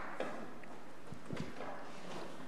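A few faint knocks and thumps over steady room tone: one sharp knock just after the start and a short cluster of low thumps past the middle.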